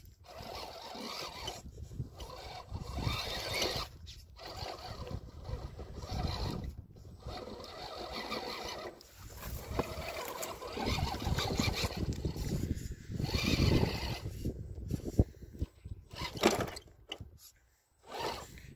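Vaterra radio-controlled rock crawler's electric motor and geared drivetrain running in stop-start throttle bursts as it climbs rock, its tyres working over loose stone. There is a sharp knock about fifteen seconds in.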